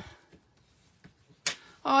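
Mostly quiet, then a single sharp click about one and a half seconds in: a bone folder being set down on the craft mat after creasing a card's fold.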